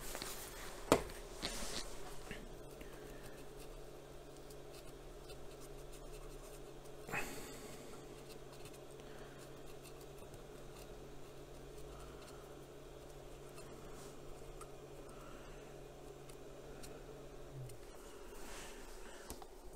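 Faint scratching of a swab rubbed over the Hitachi engine ECU's circuit board to clean it after soldering, over a steady low hum that stops near the end. A sharp click comes about a second in and a smaller one around seven seconds.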